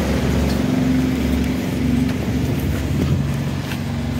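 Alexander Dennis Enviro200 single-deck bus's diesel engine idling steadily.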